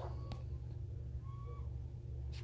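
A steady low hum, with one light click about a third of a second in.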